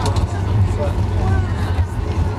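Steady low rumble inside the cabin of a Boeing 737-8200 taxiing on CFM LEAP-1B engines at taxi power, with passengers talking indistinctly over it.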